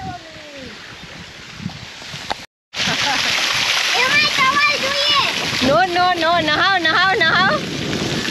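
Water gushing from a farm irrigation pipe and splashing over a child sitting in the jet, loud and steady from about three seconds in. Over it, from about four seconds in, a child's wordless, wavering high-pitched cries.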